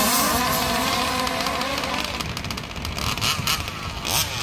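Several 1/5-scale RC cars' small two-stroke gas engines revving up and down together, their pitches wavering against one another. The sound fades about halfway through as the cars run off into the distance.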